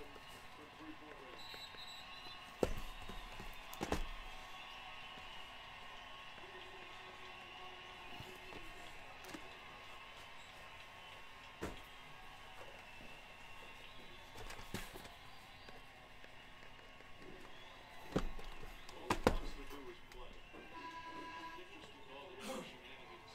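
Cardboard hobby boxes being handled and set down on a tabletop: a few scattered knocks and thumps, the loudest cluster near the end, over a faint steady background.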